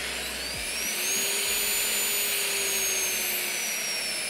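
FEIN KBC 36 compact magnetic drill's 1,200 W brushless motor running with no load. Its whine rises as it spins up after being switched on, holds for a moment, then drops slowly in pitch in the second half as the speed is turned down.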